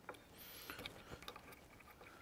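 Faint, scattered small clicks and ticks of the plastic Rockler Beadlock Pro jig being handled as its clamping knob is turned.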